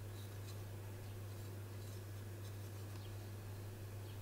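Faint handling sounds of a small vinyl Funko Pop figure being turned in the hands on a tabletop, a few soft ticks and rubs, over a steady low electrical hum.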